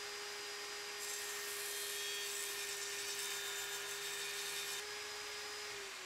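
Table saw running with a steady whine, cutting through wood from about a second in until near the end, which adds a harsh sawing hiss; the motor cuts off just before the end.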